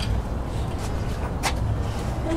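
Steady low rumble of outdoor ambience, with one sharp click about one and a half seconds in.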